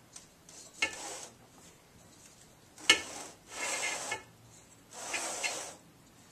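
Spatula spreading thick cake batter in a round metal cake pan: a few soft scraping swishes a second or two apart, with a sharp tap against the pan about three seconds in.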